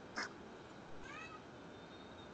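A short sharp sound, then about a second in a faint brief animal call that rises and falls in pitch.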